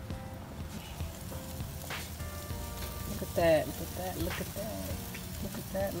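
Steaks and chicken drumsticks sizzling over the flames of a gas grill, an even hiss throughout. A voice rises over it briefly about halfway through, the loudest moment.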